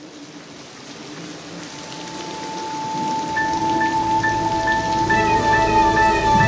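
Rain sound effect fading in as a song intro starts over it: a held keyboard note enters about two seconds in, then a repeating higher note about twice a second, growing louder throughout.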